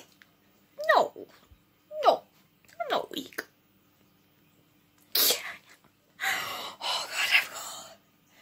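A woman's short high squeals, three in a row, each falling sharply in pitch, then a sneeze-like burst and a few seconds of heavy, breathy exhaling: she is reacting to the burn of a too-hot chilli sauce.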